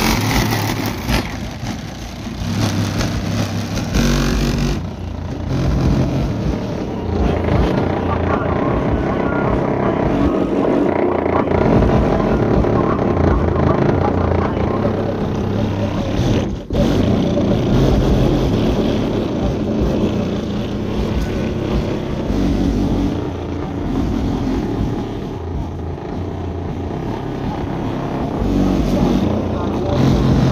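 A rap song playing loud through a car's aftermarket sound system, heard from outside the car, its two Rockville Punisher 15-inch subwoofers carrying deep bass notes under the rapped vocals. The sound cuts out for an instant about 17 seconds in.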